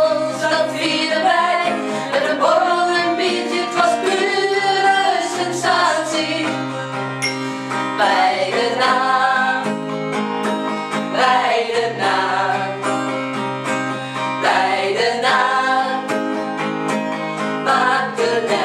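A small group of women singing a song together in Dutch, accompanied by an acoustic guitar.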